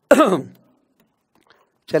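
A man clears his throat once, briefly, just after the start, with a falling pitch. Speech resumes near the end.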